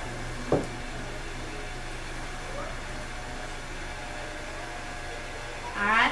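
Electric potter's wheel running with a steady low hum while clay is centered on it, with a single brief knock about half a second in.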